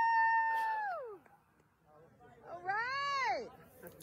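Two long, high-pitched vocal calls: the first held steady for about a second and then falling away, the second rising and falling in pitch about three seconds in. They sound like a person whooping or calling out "heyyy".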